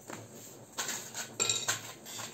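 Clear plastic food bags being handled and crinkled at a table, starting about a second in, with a short metallic clink partway through.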